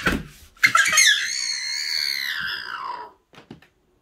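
A young child's high-pitched squeal, held for about two and a half seconds and sliding slowly down in pitch.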